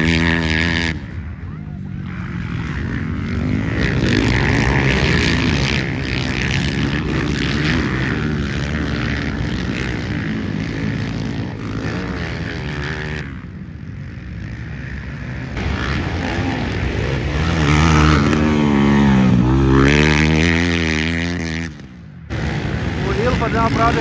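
Motocross dirt bike engines revving hard on a dirt race track, the engine notes climbing and dropping in pitch as the bikes accelerate, shift and pass. The sound breaks off abruptly several times where the footage is cut together.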